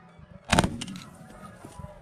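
A single shotgun shot about half a second in, dying away briefly.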